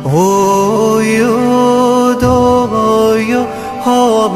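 A man singing a slow Malayalam devotional hymn: his voice slides up into a long held note at the start, sustains it for about two seconds, then moves on through a few shorter notes, over a steady sustained accompaniment.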